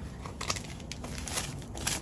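Soft fabric rustling with a few light ticks as a leather pocket ring planner is slid out of a velvety drawstring dust bag.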